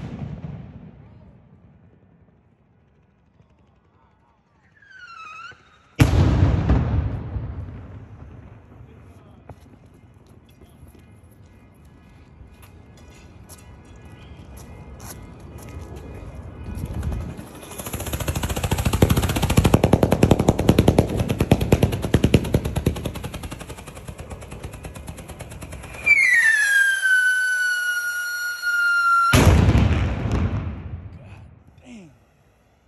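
Consumer fireworks going off. A rocket bursts with a loud bang about six seconds in that rumbles away, and a long run of rapid popping follows. Near the end a loud whistle falls steadily in pitch, then another bang.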